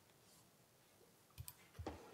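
Near silence in a quiet room, broken by a couple of faint short clicks about one and a half seconds in and a dull thump just before the end.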